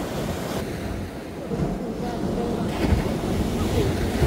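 Surf washing up over the sand, with wind buffeting the microphone.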